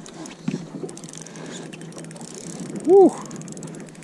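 Spinning reel being cranked, its gears turning with a ratcheting sound, as a small hooked smallmouth bass is reeled in. A short, loud shout of "Woo!" about three seconds in.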